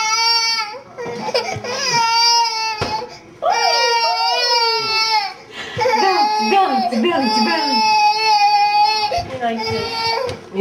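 Baby of about one year crying in long, high wails: four drawn-out cries of one to three seconds each, with short breaths between them.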